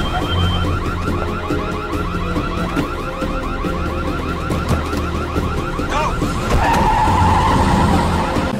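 Car alarm sounding: a fast repeating chirping cycle that switches a little past six seconds in to a steady continuous tone, the alarm moving to its next pattern. A low drone runs underneath.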